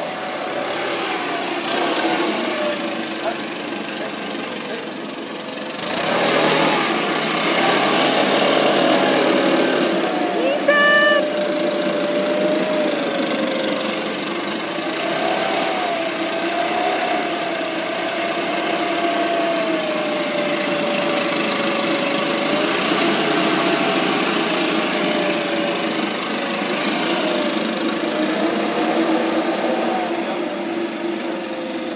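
Gas backpack leaf blower running and blasting air, its engine note wavering up and down, getting louder about six seconds in.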